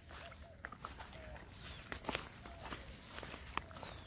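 Faint footsteps and rustling of people walking through tall dry grass, heard as scattered, irregular crackles.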